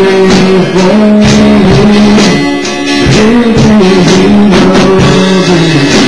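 Live worship song: a man singing long held notes over a band with steady drum beats.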